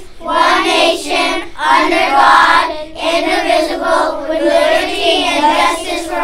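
A class of young children reciting the Pledge of Allegiance together, in phrases with short pauses between them.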